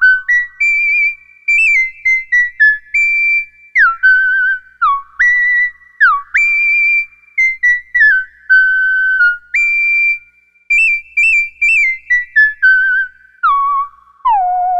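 Minimoog synthesizer playing a high, whistle-like single-note melody with an almost pure tone. The notes are short and separate, several swooping down into pitch and some with a slight wobble.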